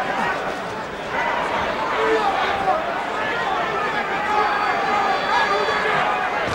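Boxing arena crowd: many voices shouting and chattering at once, a steady mass of fans' voices.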